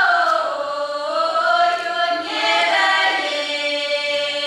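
Children's folk vocal ensemble of girls singing a cappella in Russian folk style, several voices together holding notes and sliding between them.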